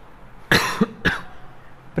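A man coughing twice, two short coughs about half a second apart.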